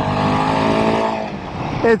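Royal Enfield Himalayan 450's single-cylinder engine pulling hard under acceleration, showing its strong low-down torque. The note swells, holds steady, then eases slightly near the end.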